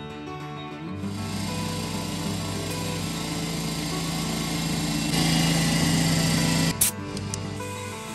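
Portable electric air compressor running, its motor and pump growing louder. It cuts off suddenly near the end, followed by a brief burst of noise.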